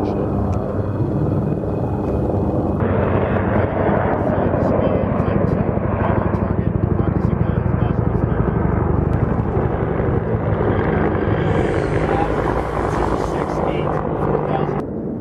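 Helicopter rotor beating with a rapid, even chop.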